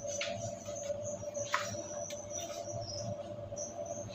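A steady low hum under a high, thin, on-and-off chirping tone, with a few short light knocks about a quarter second in and about a second and a half in.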